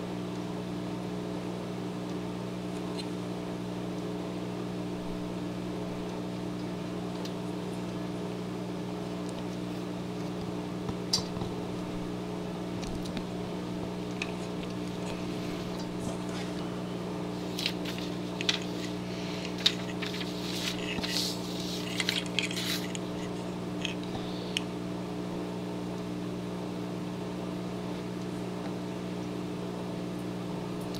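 Steady low electrical hum, with scattered light clicks and taps of a carbon-fibre quadcopter frame and small parts being handled on a cutting mat, mostly in the middle stretch.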